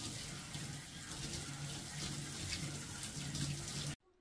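Water from an electric shower's handheld head spraying steadily onto wet hair and into a bathtub, rinsing out hair lightener. The spray cuts off suddenly at the end.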